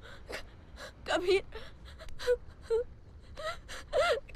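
A woman crying hard: a string of short sobs and gasping, wailing cries with a wavering pitch.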